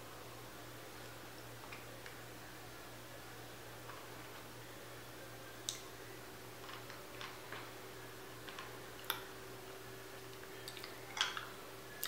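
Hard candy being sucked, clicking faintly against teeth a handful of times at irregular moments, mostly in the second half, over quiet room tone with a low steady hum.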